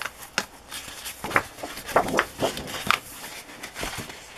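Large sheets of a scrapbook pattern-paper pad being handled and turned over, giving about half a dozen short, crisp paper rustles and snaps.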